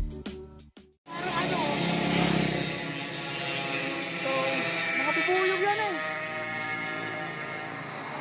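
Background music whose beat stops about a second in, followed by a steady stretch of music with a voice over it.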